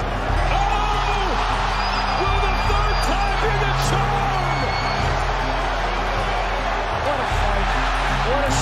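Background music with a steady bass line under a dense arena crowd shouting and cheering.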